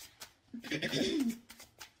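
A person clearing their throat once, a short rough vocal noise lasting under a second.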